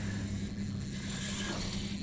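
Spinning reel's drag clicking as a hooked bass pulls line off against light two-pound line, under a steady low rumble of wind on the microphone.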